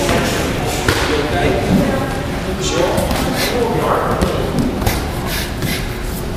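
Boxing gloves landing in a series of irregular thuds, several quick hits in a few seconds, with voices in the background.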